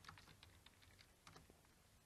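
Faint computer keyboard typing: a quick, irregular run of key clicks that stops about one and a half seconds in.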